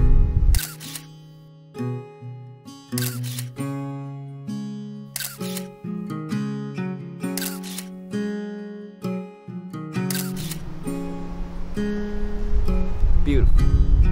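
Camera shutter firing about six times, roughly every two seconds, over slow acoustic guitar music.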